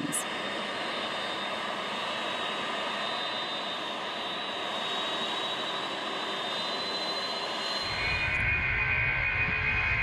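Lockheed C-5 Galaxy's four turbofan jet engines running with a steady rush and a high whine. About eight seconds in the sound changes to a louder, deep rumble with a lower whine.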